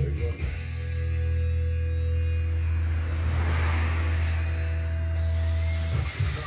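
Background music: a long held low note with steady chord tones above it.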